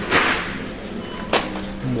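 A plastic packet of raw almonds crinkling as it is handled: a short rustle at the start and one sharp crinkle a little over a second in.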